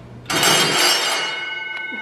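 A ship's engine-room signal bell rings about a third of a second in, and its clear high tones ring on, slowly fading. It is the alarm that tells the engineers the bridge has changed the engine-order telegraph.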